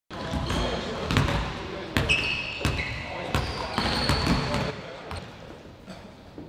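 Basketballs bouncing on a hardwood gym floor, one bounce roughly every three-quarters of a second, echoing in a large hall, over background voices. A high squeak runs through the middle seconds.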